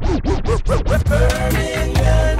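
DJ turntable scratching, about seven quick back-and-forth strokes in the first second, followed by the backing music with held tones.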